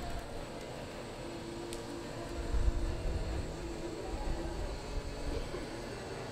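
Steady low rumble of background noise in a large indoor arena, with faint humming lines and a louder low swell about two and a half seconds in.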